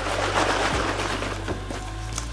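A carton of chicken stock being shaken, the liquid sloshing inside, to remix stock that has separated, over quiet background music.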